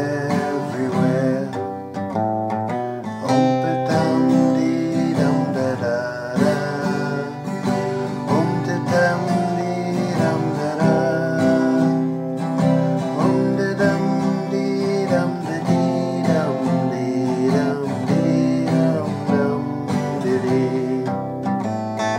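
Twelve-string acoustic guitar being played with the fingers, an instrumental passage of chords and picked notes.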